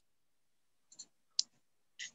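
Dead silence broken by two brief clicks: a faint one about a second in and a sharper, louder one about half a second later.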